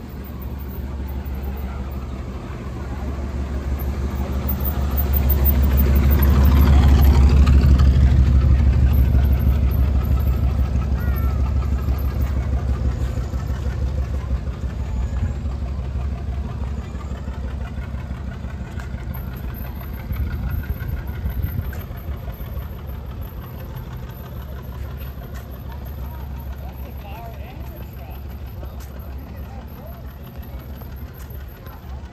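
A classic car's engine running with a deep, low note as the car drives slowly past, growing louder to its loudest about seven seconds in, then fading away.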